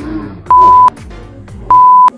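Two short, loud bleeps of a single steady pitch, about a second apart, edited onto the soundtrack. Each starts and stops abruptly, in the way a censor bleep covers spoken words.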